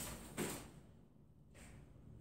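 A light switch clicking on, a short sharp click about half a second in, as the ceiling fixture's bulbs are switched on.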